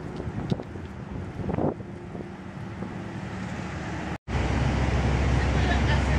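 Street traffic noise with a vehicle going by about one and a half seconds in. A little past four seconds the sound cuts out abruptly and gives way to a louder, steady low rumble of wind on the microphone.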